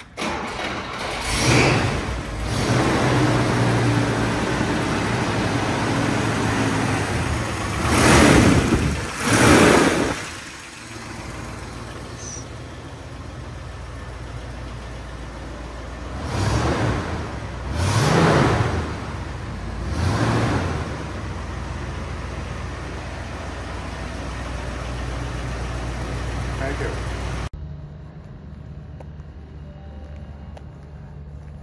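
1962 Oldsmobile Starfire's 394 cubic-inch V8 starting on the key and running, revved hard twice, then idling with three shorter revs. The engine sound cuts off abruptly near the end.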